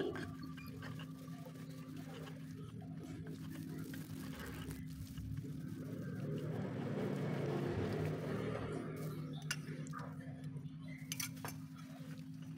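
Stone pestle grinding wet peanut sauce in a stone mortar: a soft gritty scraping that swells in the middle, with a few light clinks of stone on stone near the end. A faint steady low hum runs underneath.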